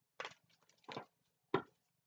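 Tarot cards shuffled and handled: three short, quiet card sounds, the last about a second and a half in.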